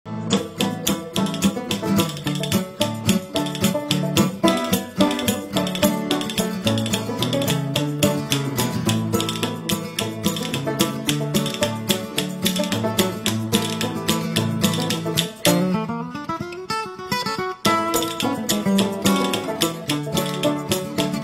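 Acoustic string-band music with fast-picked guitar over a steady bass line. The picking breaks into a short sliding passage with a brief drop in loudness about three-quarters of the way through.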